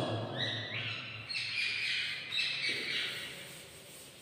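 A bird calling several times in high notes that step up and down in pitch, fading out about three seconds in.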